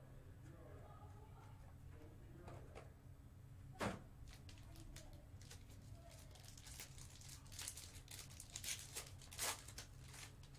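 Foil trading-card pack being torn open and crinkled by hand, a run of crackling tears in the last few seconds. A single sharp knock about four seconds in.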